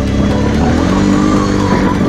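Kawasaki KFX 700 V-twin quad engine running under way on a dirt track, its pitch wavering up and down with the throttle.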